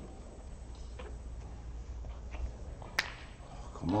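Snooker balls running on the table after a shot: faint knocks about a second in, then one sharp click about three seconds in as a ball strikes.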